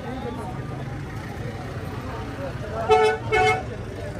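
Two short vehicle-horn toots about three seconds in, over the steady background hubbub of a crowded outdoor market.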